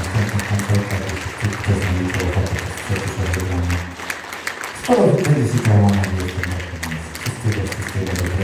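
Audience applause over held low chords from the band. About five seconds in, a loud sound slides down in pitch, the loudest moment.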